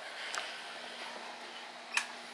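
Light switches being flipped in a quiet room, over a faint steady hum: a small click about a third of a second in, then a sharp single click near the end.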